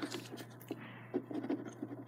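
A few faint, short scratching sounds over a low steady hum, in a quiet room.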